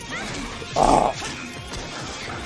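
The show's soundtrack: background music, with a short loud burst of sound effect about a second in.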